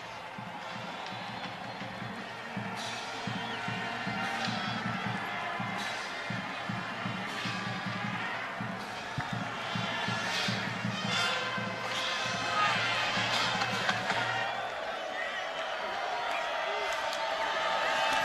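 Football stadium crowd noise with music playing over it. The sustained low notes drop out near the end.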